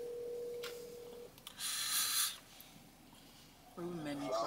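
A steady single-pitched tone that stops a little over a second in, then a loud breathy rush of air about two seconds in as a man smokes a blunt.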